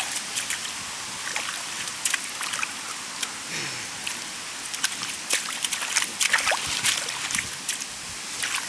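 German Shepherd puppy digging in wet mud with its front paws: quick, irregular wet scrapes and splats of thrown mud, coming thicker in the second half.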